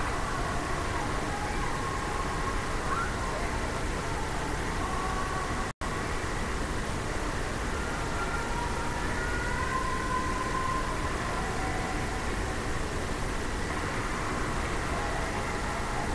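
Steady low background noise with a few faint tones drifting in and out; it cuts out for an instant about six seconds in.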